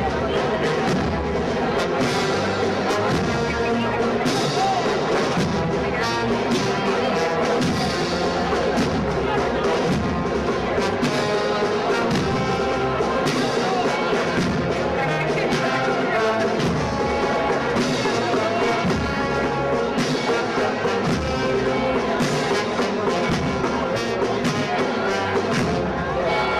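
Wind band with brass and drums playing a processional march: a brass melody over regular drum strokes.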